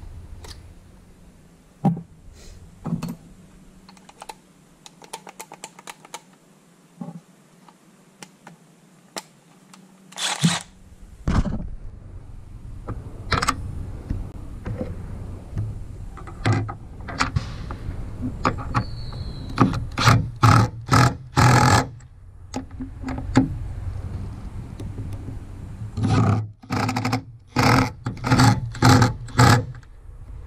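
Hard plastic clicks, knocks and scrapes as a black plastic roof-rail base is handled and pressed onto a truck roof. They are faint and sparse for the first ten seconds, then louder and more frequent, with clusters of sharp knocks in the second half.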